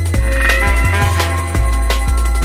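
1990s atmospheric drum and bass (jungle) music: fast breakbeat drums over deep sub-bass notes and sustained synth pads, with a short warbling synth sound about half a second in.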